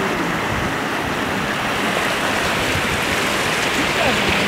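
Shallow rocky mountain stream running over stones: a steady, continuous rush of water.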